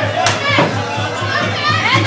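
Spectators yelling and cheering in high-pitched voices over background music with a steady low beat, with a sharp smack about a quarter second in.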